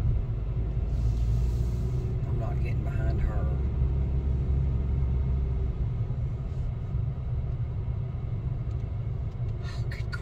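Car engine and tyre rumble heard from inside the cabin at low parking-lot speed. The low rumble is heavier for the first six seconds or so, then eases.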